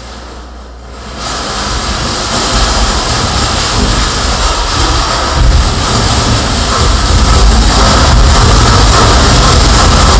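Harsh noise performance: contact-miked objects amplified into dense, distorted noise that swells suddenly about a second in. It keeps building and thickening in the low end into a loud, steady wall.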